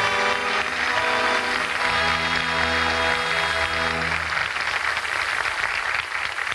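Studio orchestra playing a sustained act-curtain music bridge that fades out about four to five seconds in, with studio audience applause under it.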